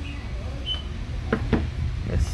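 Two light knocks close together about a second and a half in, from a plastic fan blade and a screwdriver being handled, over a steady low rumble.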